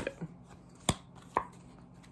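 Tarot cards handled on a table: two sharp taps about half a second apart, the first louder, as cards are laid or snapped down.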